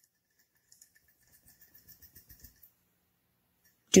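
Faint, quick soft ticks and dabs of fingers working wet, coffee-soaked paper in a glass pie plate, for about two seconds.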